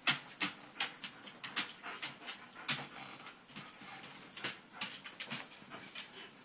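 Corgi puppy making a run of short, sharp sounds at irregular intervals, about two or three a second.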